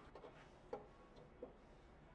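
Near silence with a few faint ticks and taps from a hand working oil into a turned wooden bowl; the clearest tap comes a little under a second in.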